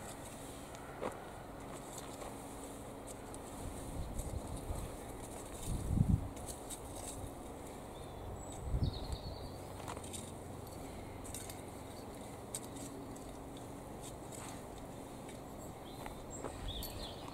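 Garden hoe scraping and chopping through heavy clay soil as earth is drawn up around potato plants, with scattered light scrapes and a few dull thuds, the loudest about six seconds in.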